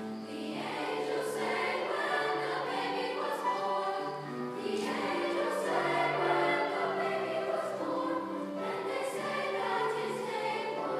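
Mixed choir of women's and men's voices singing a Christmas spiritual in sustained chords.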